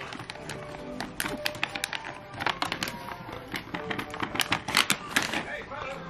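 Hard plastic dog puzzle toy clicking and rattling in quick irregular taps as a dog noses at its sliding treat-covers on a wooden floor. Music plays softly in the background.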